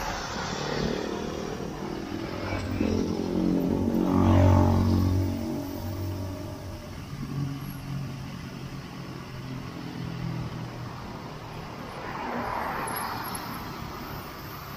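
Motor vehicle engines passing close by in traffic, the loudest going by about four seconds in, over a steady hiss of tyres and road noise on wet asphalt.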